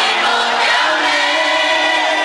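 A Cantonese pop song performed live: a woman's singing voice over a backing track, with held notes.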